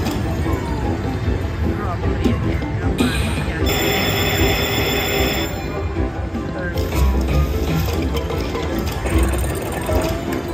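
Huff n' More Puff slot machine playing its free-games music and reel sound effects over casino chatter, with a bright ringing chime a little under four seconds in that lasts under two seconds.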